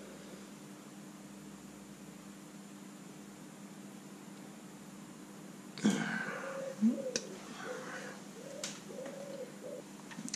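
Quiet workshop room tone with a steady low hum. About six seconds in there is a sharp knock, then a second one, a couple of small clicks and faint voice-like sounds: hands working on a bare engine.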